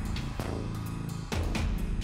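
Dramatic background music: a steady low bass with a few drum hits.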